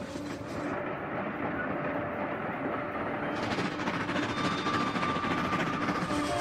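A train running on rails, a rushing clatter that grows steadily louder and brighter.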